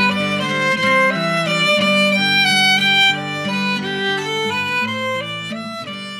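Violin playing a melody over acoustic guitar accompaniment, growing softer near the end.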